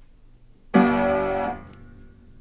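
Upright piano chord struck about three-quarters of a second in, then cut off sharply after under a second instead of ringing on. The sustain pedal is pressed but does not hold the notes: the pedal mechanism is broken.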